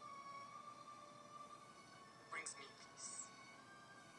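Near silence: faint background music holding a long, steady note, with two brief soft hissy sounds about two and a half and three seconds in.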